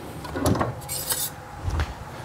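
Handling sounds on a workbench top: a light knock about half a second in, a short scrape about a second in, and a dull thump near the end.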